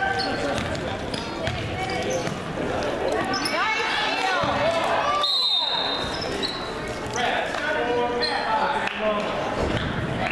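Basketball dribbling on a gym's hardwood floor while players and spectators call out, and a short high whistle a little over five seconds in.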